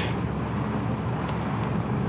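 Steady low rumble of motor traffic on a city street.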